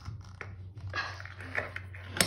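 Irregular handling noises of a water-filled rubber balloon being worked at the tap in a water-filled sink: wet rubber and water shifting in short bursts, over a low steady hum.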